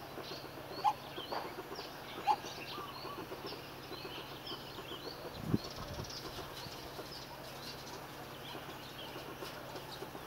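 Small birds chirping: many short, high chirps throughout, with a few lower single notes in the first few seconds. A dull thump about five and a half seconds in.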